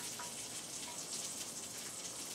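Faint, steady crackling sizzle of just-baked stuffed portobello mushrooms in a foil tin dish, with a spatula working under them.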